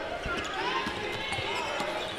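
Basketball game court sound in an arena: a ball bouncing on the hardwood floor a few times, with faint players' and crowd voices in the hall.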